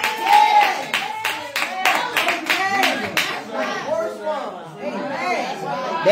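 A congregation clapping hands rapidly while several voices call out over it; the clapping thins out a little past halfway and the voices carry on.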